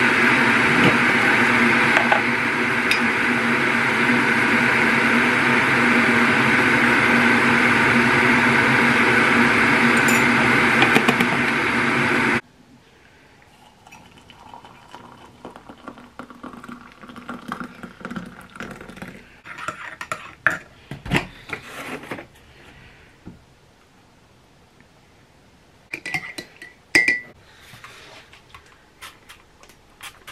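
Electric kettle heating with a loud, steady rush that cuts off suddenly about twelve seconds in. Then hot water is poured from the kettle into a ceramic mug, and a spoon clinks against the mug near the end as the coffee is stirred.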